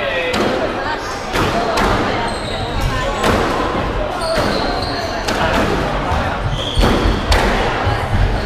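A squash rally: the ball is struck by rackets and hits the court walls, with sharp hits about once a second, echoing in the hall, along with short squeaks of shoes on the wooden floor.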